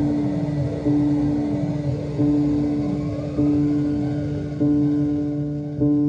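Experimental electronic synthesizer playing a repeating note about every second and a quarter, each strike trailing falling pitch sweeps, over a steady low drone.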